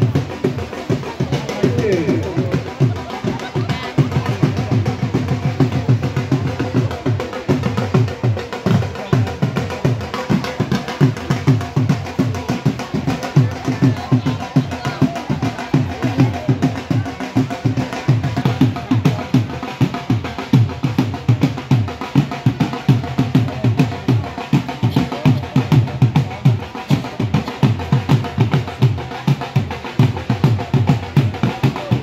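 Dhol, the two-headed barrel drum, beaten in a fast, steady rhythm, with crowd voices underneath.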